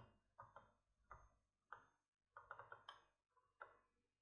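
Near silence broken by faint, scattered computer-mouse clicks, about eight in all, with a quick run of several about two and a half seconds in.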